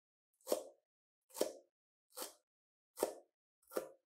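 Kitchen knife chopping green vegetable stalks on a plastic cutting board: five even knocks, about one every 0.8 seconds.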